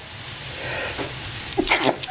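A steady hiss with a low hum under it, and a brief vocal sound near the end.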